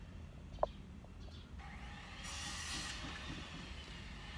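Faint whoosh of a car passing outside, heard from inside a car's cabin, building about a second and a half in and easing near the end, over a low steady rumble. A brief chirp sounds under a second in.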